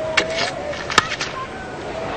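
Cricket bat striking the ball: one sharp crack about halfway through, over the steady murmur of a stadium crowd.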